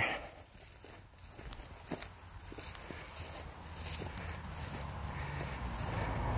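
Footsteps on grass and dirt, a few soft scuffs and clicks, over a low rumble that slowly grows louder.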